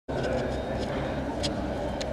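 Steady ambient noise of a large indoor public space: a low hum under a murmur of distant voices, with a few faint clicks.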